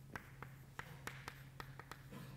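Chalk tapping and clicking against a chalkboard while writing: about eight faint, sharp taps at uneven spacing, over a steady low room hum.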